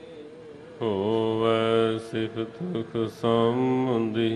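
Gurbani kirtan: a voice sings a Sikh hymn in long, held notes. A soft held note is followed under a second in by a louder note that slides up, then short broken phrases, then another long held note near the end.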